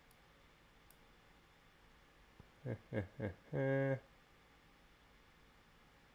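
A man's brief laugh: three short pulses of laughter, then a drawn-out 'I…', with quiet room tone before and after.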